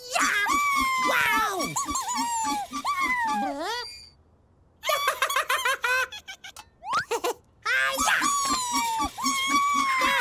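Cartoon character voices: high-pitched, wordless squeaky vocalizing with laughing and squealing. A short quiet gap comes about four seconds in, followed by a run of quick clicks and a rising glide before the voices resume.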